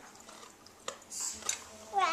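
A mostly quiet room with two small clicks, about a second and a second and a half in, and a brief soft hiss between them.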